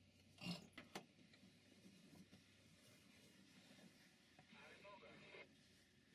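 Near silence from faint outdoor background, with two soft knocks about half a second and a second in and a faint voice-like murmur near the end.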